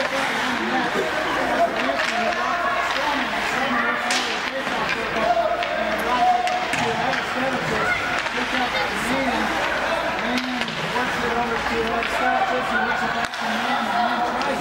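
Spectators talking in the stands of an ice rink, voices going on throughout, with a few sharp knocks from play on the ice, the clearest about four seconds in.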